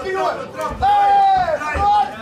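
A voice shouting instructions in Dutch: "Jee! Laat je trappen! Jee!" ("let your kicks go"). It includes one long drawn-out call about a second in.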